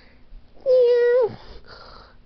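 A cat-like meow, the kind voiced for Gary the snail, held at an even pitch for about half a second and dropping in pitch at its end.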